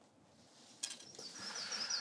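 A small bird chirping, a quick run of short high notes near the end, faint in the background. Before it there is a single soft click about a second in.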